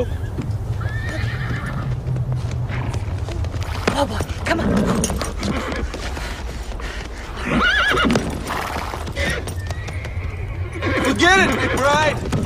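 A rodeo horse whinnying several times, about a second in, around the middle and near the end, with hoofbeats, over a steady low rumble.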